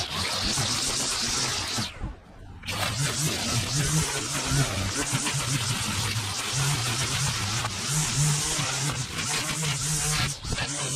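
String trimmer running steadily, its spinning line cutting through dry grass, with background music over it. The whole sound drops away briefly about two seconds in, then resumes.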